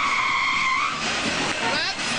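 Car tyres screeching in a skid: a steady high squeal over a rushing noise that cuts off about a second in.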